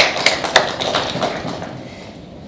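Audience applause: many hands clapping, thickest in the first second and dying away.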